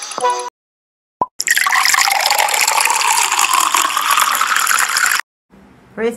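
A logo sound effect: a loud rushing, watery noise that rises steadily in pitch for about four seconds, like liquid filling a container, and then cuts off abruptly. It is preceded by a brief blip.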